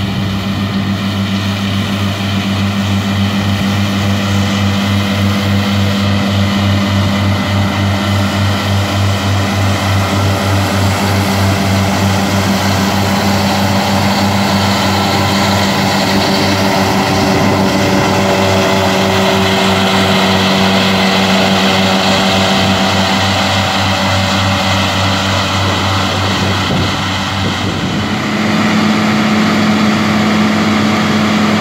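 Deutz-Fahr tractor running steadily under load, driving a Krone front and rear butterfly disc mower combination through standing grass: a steady engine and mower-drive drone with a fast pulse. About two seconds before the end the sound changes to that of another tractor and mower.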